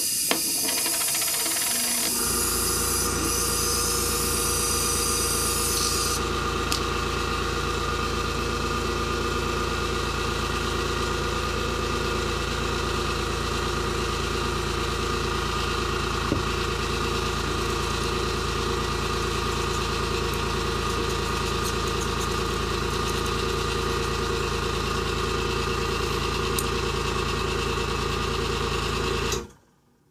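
Hiss of air from an airbrush for the first six seconds or so. An airbrush compressor's motor starts about two seconds in and runs with a steady hum until it cuts off just before the end.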